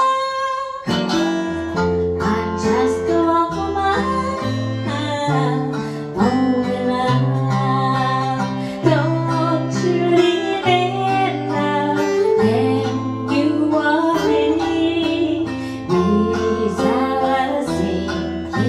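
Acoustic guitar and shamisen playing a slow ballad together, the guitar picking a low bass line under plucked shamisen notes, with a woman singing.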